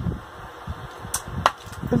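Eating sounds from working small lobster legs by hand and mouth: soft chewing and sucking, with two sharp clicks a third of a second apart past the middle as the thin shells are snapped or the lips smack.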